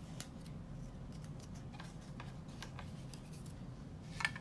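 Irregular small clicks and taps from hands working with craft materials, over a faint steady low hum.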